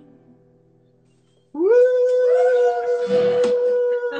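The last guitar chord of a song fades out. About a second and a half in, a loud, long howl rises, holds one steady pitch for about two and a half seconds, and drops at the end.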